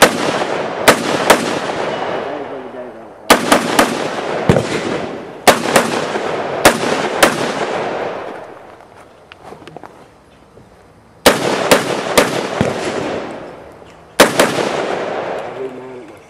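AR-style semi-automatic rifle firing in quick strings of two to five shots, with short pauses between strings and a longer pause of about three seconds near the middle. Each shot rings out with a long echo that dies away over a second or two.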